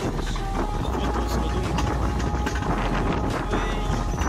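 Alpine coaster sled running fast along its steel rail track: a continuous rumble and rattle of the wheels on the rails, with wind buffeting the microphone.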